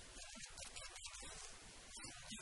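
Speech only: a man talking quietly into a handheld microphone, low in level.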